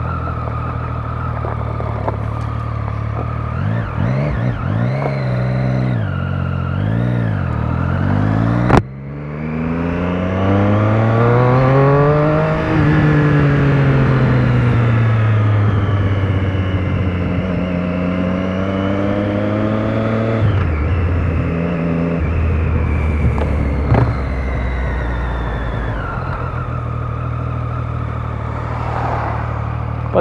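Motorcycle engine under way, running steadily. After a sharp click about nine seconds in, the revs climb hard for about three seconds and then fall away. The revs rise again around eighteen seconds, drop back near twenty, and the engine runs steadily to the end.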